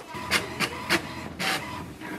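HP Smart Tank 6001 ink-tank inkjet printer running a copy job: a steady mechanical whir from the paper feed and print mechanism, broken by a series of short swishes, as the printed page starts to feed out.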